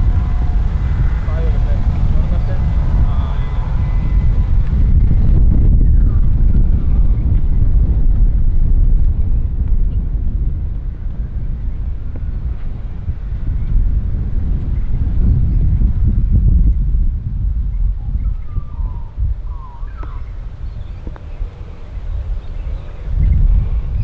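Wind buffeting the microphone: a loud, uneven low rumble, heavier in the first half, easing for a few seconds near the end.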